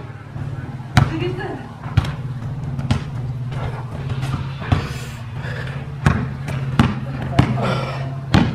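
Basketball bouncing on an outdoor asphalt court, with sharp, irregular bounces about once a second, over a steady low hum.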